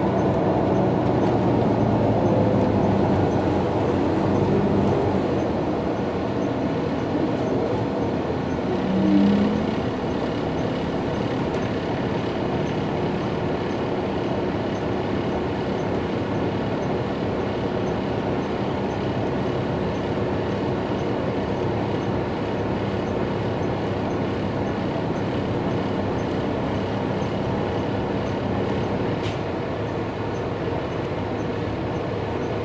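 Cabin noise inside an MCI J4500 coach with its Detroit Diesel DD13 engine and Allison automatic, slowing off a highway ramp, with a short loud squeal-like tone about nine seconds in, then running steadily at a lower level while it waits at a traffic light.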